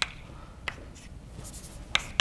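Chalk on a blackboard while writing: a few sharp taps, one about two-thirds of a second in and one near the end, with a faint scratch of chalk between them.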